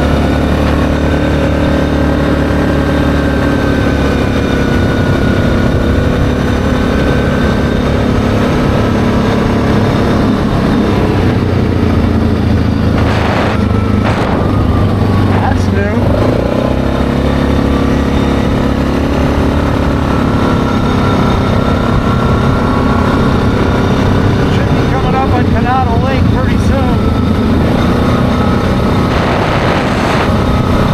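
ATV engine running steadily at road speed, its note shifting briefly about halfway through.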